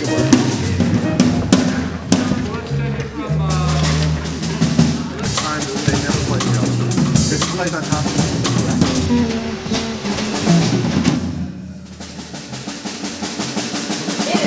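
A small jazz band rehearsing: drum kit with snare and bass drum, a bass line and piano playing together. The music eases off and gets quieter near the end.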